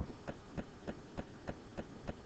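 Faint, evenly spaced ticks, about three a second, over a low background hum.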